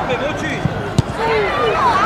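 One sharp thud of a football being struck about halfway through, amid children's shouting on the pitch.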